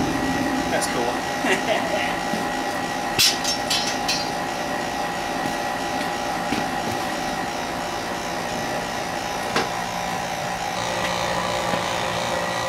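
Oil-fired foundry furnace running, its burner blower giving a steady hum with several fixed tones. A few sharp metal clanks from steel foundry tools come about three seconds in and again near ten seconds.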